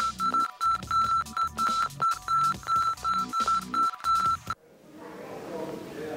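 Bomb-timer beeping sound effect: a short high electronic beep repeating about three times a second over a low pulsing rhythm. It cuts off suddenly about four and a half seconds in, with no explosion after it.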